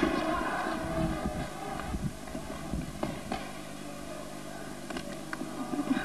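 Handling noise from a camcorder being carried by hand: low rumbling bumps for the first three seconds or so, then a few faint knocks.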